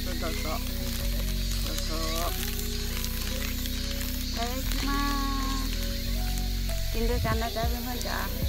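Crinkling of the thin plastic wrapper of a convenience-store onigiri as it is peeled open, over background music with sustained tones.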